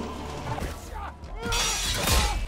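Film sword-fight soundtrack: voices grunting and straining, then a loud crash-like hit of impact effects near the end, over a music score.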